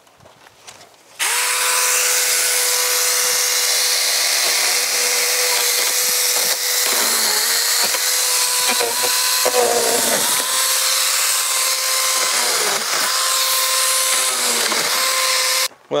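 Saker 20-volt mini cordless electric chainsaw starting about a second in and running at a steady pitch, the motor note dipping briefly several times as the chain bites into palm fronds. It cuts off just before the end.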